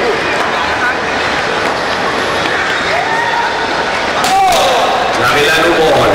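Steady crowd chatter and shouting voices from players and spectators, with one sharp knock a little over four seconds in: a cricket bat striking a tennis ball.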